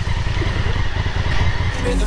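Motorcycle engine running with a steady low rumble while riding. Music comes in near the end.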